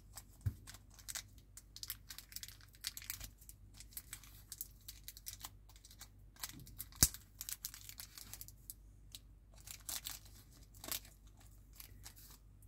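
Small clear plastic parts bag crinkling and crackling as fingers work it open to get a screw out: a long run of faint irregular crackles, with a sharper click about seven seconds in.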